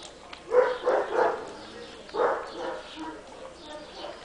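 Siberian husky puppies barking during rough play: a quick run of three short barks about half a second in, another bark just after two seconds, and fainter ones after.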